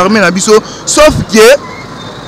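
A man speaking in short bursts, pausing for the second half, with steady street traffic noise underneath.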